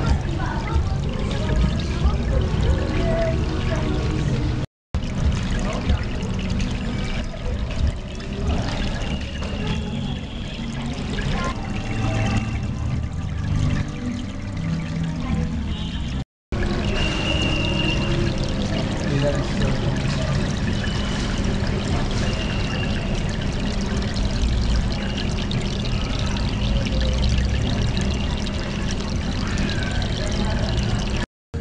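Water pouring and bubbling steadily in a doctor-fish spa tank, churned by its aeration, with music in the background. The sound cuts out twice for an instant.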